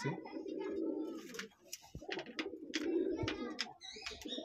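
Domestic pigeons cooing in their loft: two long, low coos, the first through the opening second and a half and the second from about two and a half seconds in, with a few light clicks between them.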